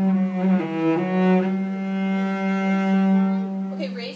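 Cello bowed slowly: a short note, a quick change of note about a second in, then one long, steady held note that stops near the end.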